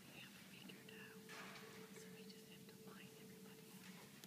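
Near silence: room tone in a hall, with faint whispering and one faint steady tone held for about three seconds.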